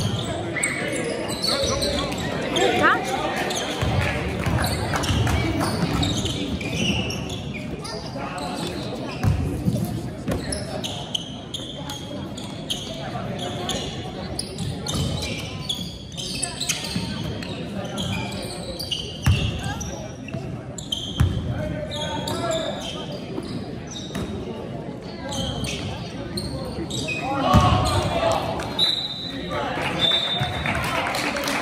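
A basketball bouncing on a hardwood gym court, among the voices and calls of players and spectators, echoing in a large gymnasium.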